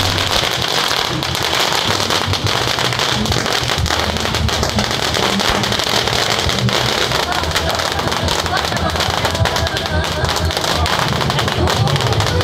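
A string of firecrackers going off in a rapid, unbroken crackle of sharp bangs, with crowd voices underneath.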